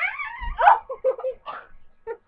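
High-pitched squealing and giggling in short broken bursts, with a low bump about half a second in.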